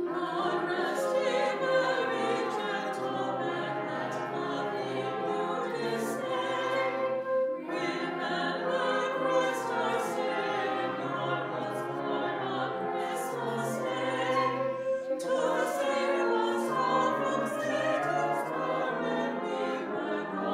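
Mixed choir of men's and women's voices singing a slow classical piece with a wind band of flutes, clarinets and brass accompanying. Brief pauses for breath between phrases come about 7.5 and 15 seconds in.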